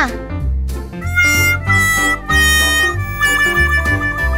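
Background music for children: a bass line repeating in short even blocks, with a melody of long held notes coming in about a second in.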